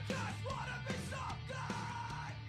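Hardcore punk song: distorted electric guitar tuned down a whole step with a Headrush drop-tune effect, played along with the band's recording, under loud shouted vocals.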